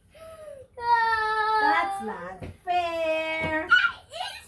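A young girl's high voice holding two long, drawn-out notes, the second pitched lower than the first.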